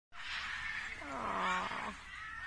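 A spider monkey's drawn-out vocal call, held at one pitch for about a second in the second half, over a steady high hiss.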